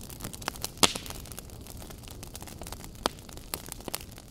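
Wood campfire crackling, with sharp pops scattered over a soft steady hiss; the loudest pop comes about a second in.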